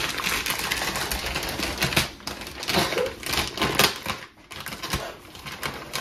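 Plastic wrapping on a parcel crinkling and rustling in a rapid run of crackles as hands pull it open, with a short lull about four seconds in.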